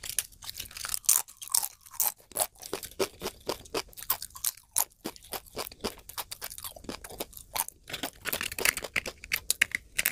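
Close-miked chewing of crisp food: a steady run of sharp crunches, several a second.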